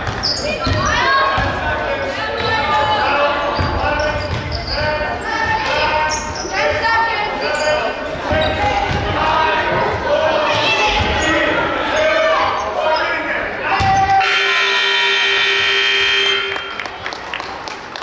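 A basketball bouncing on a gym floor amid voices of players and spectators in a large, echoing hall. About fourteen seconds in, a loud, steady scoreboard horn sounds for about two and a half seconds.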